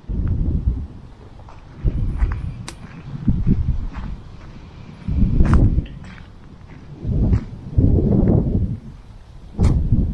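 Gusts of wind buffeting an action camera's microphone: about seven irregular low rumbles, each half a second to a second long, with a few light clicks between them.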